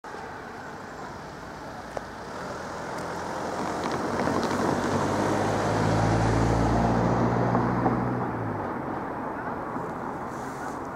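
A car drives past, its engine and tyre noise building over several seconds, loudest about six to seven seconds in, then fading away. A short sharp click about two seconds in.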